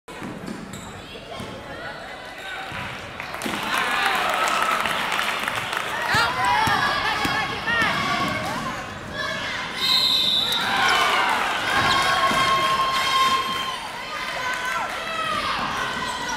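Live basketball play on a hardwood gym floor: the ball dribbling and sneakers squeaking in short rising and falling chirps as players cut and stop, with shouting voices echoing in the hall.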